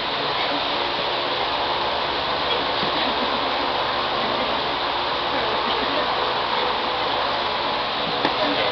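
Steady, even room noise with faint, indistinct chatter from onlookers.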